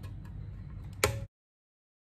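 A single sharp click about a second in, from the plastic locking clip of a ribbon-cable connector inside a car radio head unit being pushed up, over a low steady hum. The sound then cuts out completely.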